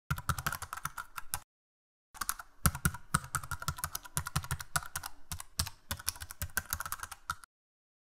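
Rapid computer-keyboard typing clicks, a sound effect for text being typed out on screen. The typing breaks off for about half a second near the start, resumes, and stops shortly before the end.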